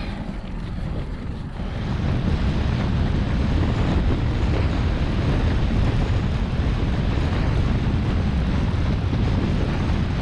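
Wind rushing over the microphone of a bike-mounted camera as a road bicycle rolls along at speed: a steady rumbling rush, louder from about two seconds in.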